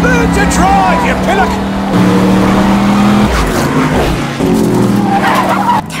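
Open-cockpit race car engines running hard at speed, the engine note stepping up about two seconds in and dropping about a second later, with tyres squealing.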